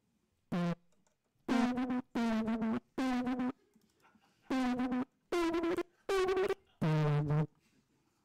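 Bespoke Synth's software sampler playing back a short recorded voice sample as notes from a keyboard: about eight notes of roughly half a second each, at several different pitches, with short gaps between them.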